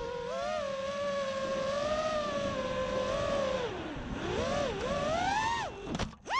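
EchoQuad 230 FPV racing quadcopter's motors and propellers whining, the pitch rising and falling with the throttle. Near the end the whine drops away steeply as the quad tumbles out of the air.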